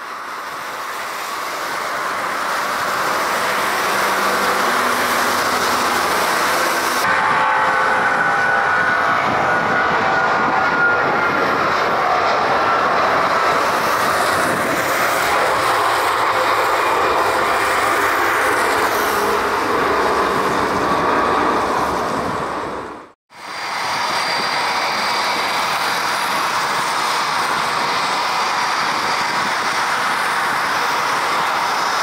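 Airbus A330-200's twin jet engines at takeoff thrust, the noise building over the first few seconds and then holding steady through the takeoff roll and rotation on a wet runway. The sound cuts out for a moment about two-thirds of the way in, and steady jet noise resumes after it.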